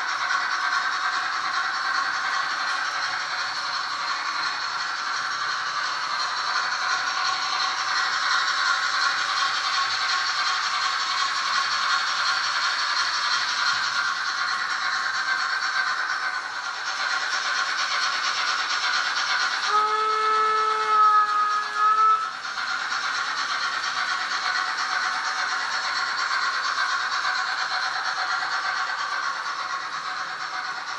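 Märklin H0 model trains running on the layout track: a steady rattling hum of wheels and motors. About two-thirds of the way through, a model steam locomotive's sound gives a steam whistle lasting about two seconds.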